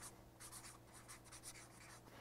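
Felt-tip marker writing on a plastic gallon jug: a quick run of faint strokes as the tip rubs across the plastic.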